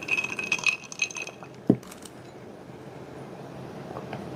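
Ice cubes clinking inside a glass mug of soda as it is lowered, in quick ringing clinks over the first second and a half. The mug is then set down on the table with one sharp knock.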